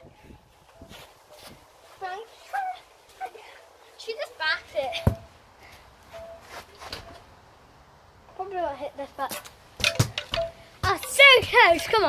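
A child's wordless calls and exclamations come in short spurts, loudest near the end. Two sharp thuds sound about five and ten seconds in, typical of a football being kicked.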